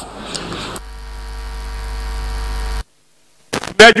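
Electrical mains hum on the audio line: a steady low buzz that grows slowly louder, then cuts off abruptly about three seconds in, leaving a brief dead silence before a voice starts.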